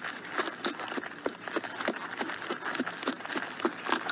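Horse hoofbeats at a trot: an even run of short knocks, about three to four a second.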